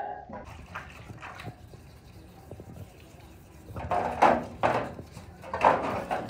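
Water splashing and sloshing in a shallow tray as hands scrub painted sewing machine bodies, in irregular bursts in the second half after faint scattered clicks.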